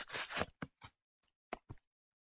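Pokémon card packaging being ripped open by hand: about half a second of tearing rustle, then a few short, sharp crinkles.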